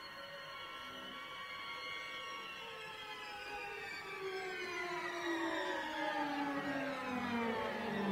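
Orchestral strings playing a slow song intro: a sustained chord of many tones glides steadily downward in pitch while swelling louder.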